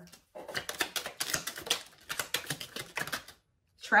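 Tarot cards being shuffled by hand: a fast, uneven run of light clicks and flicks lasting about three seconds, stopping just before the end.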